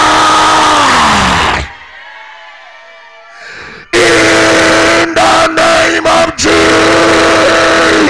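A man's voice shouting long drawn-out notes into a microphone, loud and distorted. The first held note slides down in pitch and ends about a second and a half in; after a quieter pause of about two seconds a second long note is held steady, with brief breaks, until near the end.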